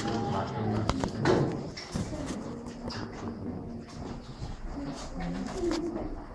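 Indistinct murmur of children's and adults' voices in a crowded room, with shuffling and a few sharp knocks as children move into place.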